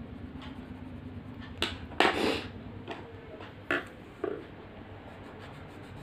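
Colour pencils knocking against the desk and each other as one is put down and another picked up: a sharp tap, a louder clatter about two seconds in, then two lighter knocks.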